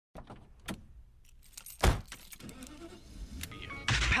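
Handling noise: a few scattered clicks and knocks over a low steady hum, with one loud thump a little before two seconds in.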